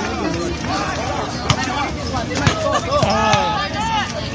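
Overlapping voices of several people chattering at once, with a few sharp clicks about one and a half, two and a half and three seconds in.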